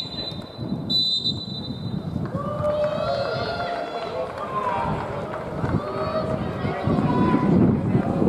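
Referee's whistle on a football pitch: a short blast, then a longer one lasting about a second. Stadium crowd murmur underneath.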